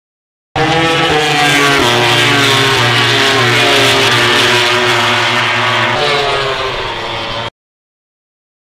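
MotoGP racing motorcycle engine running at high revs, with shifts in pitch about a second in and again near the end. The sound starts and cuts off abruptly.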